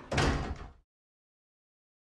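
A door shutting with a loud thud, cut off abruptly less than a second in.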